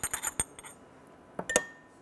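Metal spoon clinking against a glass tumbler as olive oil is spooned into a dressing: a quick run of light clinks at the start, then one more clink with a short ring about one and a half seconds in.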